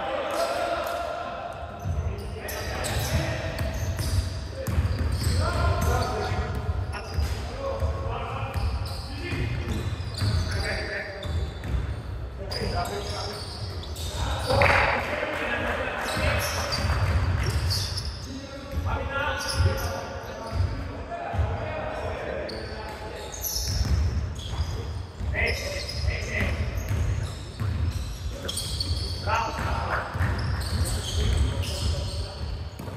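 Basketball bouncing on a hardwood gym floor during a game: a run of dribbles and other knocks, echoing in a large hall, with players' voices calling out between them.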